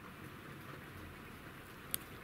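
Faint handling of a small metal in-ear earphone and its detachable cable connector between the fingers, over low room tone, with one tiny sharp click near the end.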